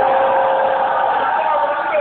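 A voice chanting, holding one long note for most of the two seconds before breaking off near the end.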